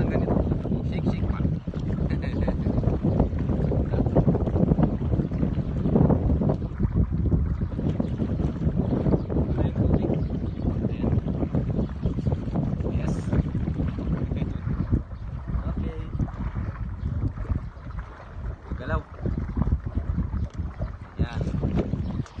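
Wind buffeting the microphone on an open river raft: a loud, gusting low rumble that swells and drops unevenly, easing somewhat in the second half.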